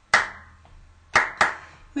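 Three hand claps: one just after the start, then two quick claps about a second in.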